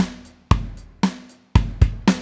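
GarageBand's virtual acoustic drum kit playing a simple kick and snare beat at about 115 bpm, roughly two beats a second. Closed hi-hat pedal taps fall on the beats as that part is recorded.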